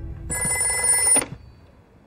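Old-style desk telephone's bell ringing for about a second, then cut off suddenly as the receiver is lifted, with a faint click.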